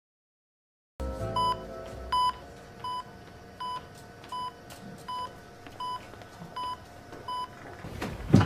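An electronic beeper sounding a single short beep about every three-quarters of a second, nine beeps in a row, starting about a second in after silence, over a low steady hum. The first two beeps are louder than the rest.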